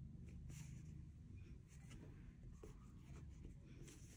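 Near silence: room tone with a few faint rustles and taps of a paper notebook being handled and turned in the hands.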